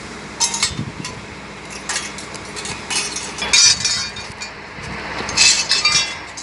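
Jagged pieces of metal strike debris clinking and scraping against each other and the asphalt as they are handled and laid out. The clinks come irregularly, loudest about three and a half seconds in and again near the end.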